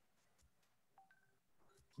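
Near silence, with a few very faint, short electronic beeps at different pitches about a second in.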